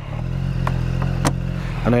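Two light clicks about half a second apart, from the charging cable and fittings being handled in the scooter's underseat compartment, over a steady low hum.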